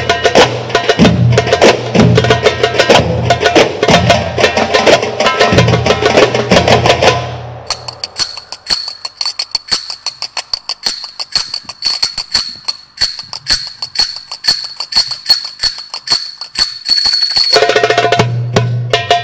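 An Egyptian percussion ensemble of darbukas (goblet-drum tablas) and frame drums playing a fast, dense rhythm. About seven seconds in it drops back to sparse single drum strokes under a thin, steady high ringing, and the full ensemble comes back in near the end.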